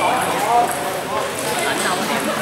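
Voices of people chattering in a large hall, with a few light knocks of a table tennis ball.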